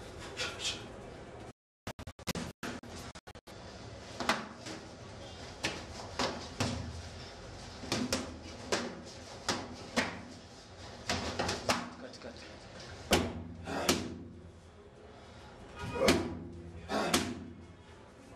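Kickboxing gloves and kicks striking pads and bodies in a run of sharp smacks, roughly one a second, each with a short ring in the room. The sound cuts out in short gaps a couple of seconds in.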